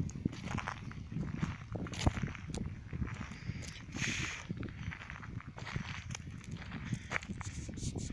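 Footsteps and rustling on a dry, grassy slope: irregular crunches and knocks over a low rumble, with a brief hiss about four seconds in.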